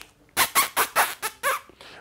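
A man making a quick run of about six short, squeaky vocal noises with his mouth, a comic imitation rather than words.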